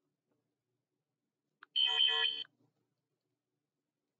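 A single short electronic alert tone, about two thirds of a second long, sounding about two seconds in, preceded by a faint click; otherwise the room is nearly silent.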